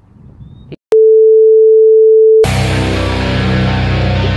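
A loud, steady electronic beep, one pure tone about a second and a half long, stops abruptly and music with guitar takes over at once.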